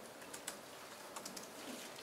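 Faint, scattered clicks of computer keyboards being typed on, in a quiet room.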